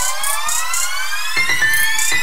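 Electronic background music building up: a synth sweep rising slowly in pitch, with short high percussive hits at regular spacing.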